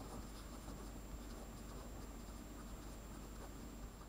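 A Staedtler handwriting pen writing words on a sheet of paper: a faint, steady scratch of the pen tip moving across the page.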